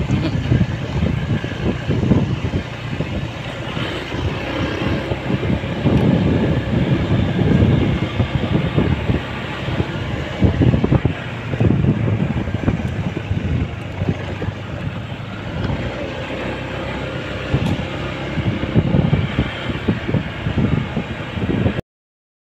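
Motorcycle riding along a rough, broken road: the engine runs steadily under irregular wind buffeting on the microphone and tyre rumble. The sound cuts off abruptly near the end.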